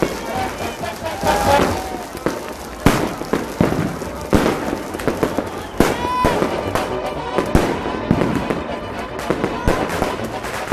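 Fireworks going off: irregular sharp bangs and cracks, a loud one every second or two, over steady background music.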